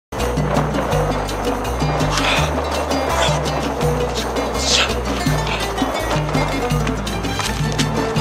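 Background music with a bass line of held low notes that changes about every half second.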